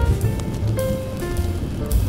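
Smooth jazz with slow, held melody notes and a deep bass, mixed with a steady hiss of rain.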